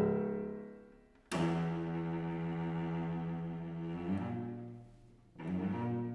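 Cello playing slow, long bowed notes separated by pauses. A loud chord dies away, then a note comes in sharply about a second in and is held, steps lower at about four seconds and fades, and another note begins near the end.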